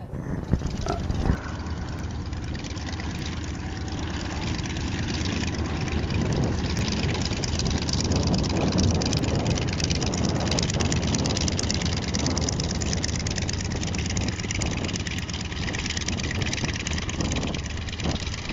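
Single-engine propeller aircraft's engine running as the plane taxis past, swelling to its loudest around the middle and easing off towards the end.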